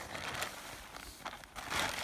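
Rustling and crinkling of camping-gear fabric being handled and spread out on the ground, in a few irregular bursts, loudest near the end.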